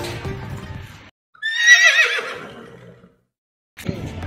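A horse whinnying once: a high, wavering call that sinks and fades over about a second and a half, with abrupt cuts to silence before and after it.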